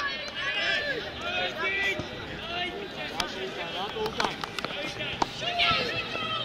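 Young footballers' voices shouting and calling across an outdoor pitch during a match, with a few sharp knocks among them.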